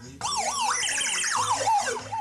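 Circuit-bent electronic sound box played through its hand-shaped body contacts: a loud, siren-like warble of pitch glides sweeping rapidly up and down, several a second, starting just after the beginning.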